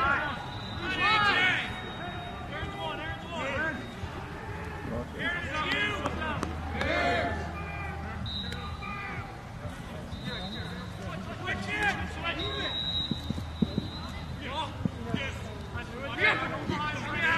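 Indistinct talk and calls from sideline spectators, with a few sharp clacks near the end, typical of lacrosse sticks striking each other or the ball.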